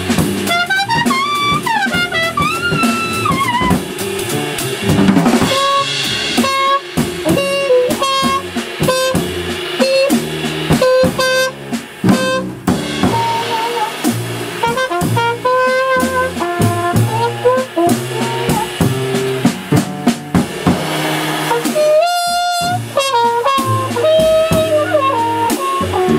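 Live jazz trio: trumpet playing a melodic solo line over walking upright bass and a busy drum kit, with the trumpet gliding up and down in pitch early on.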